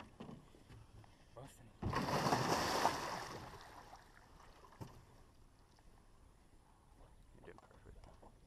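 Large alligator gar thrashing at the surface beside the boat: one loud splash starts about two seconds in, lasts about a second and a half and fades out.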